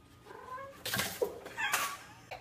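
Domestic cat yowling, with two loud, harsh noisy bursts, one about a second in and one near the end.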